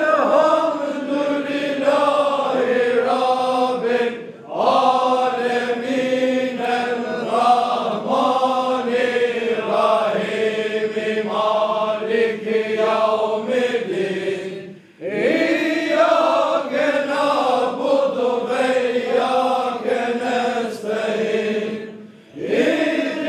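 A group of men chanting together in unison, a Sufi devotional chant sung in long sustained phrases. The chant breaks off briefly for breath about four seconds in and again about fifteen seconds in, then resumes.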